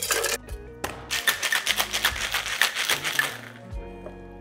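Ice cubes tipped into a metal cocktail shaker with a brief clatter. After about a second the shaker is shaken, the ice rattling against the metal about five or six times a second for over two seconds, then stopping.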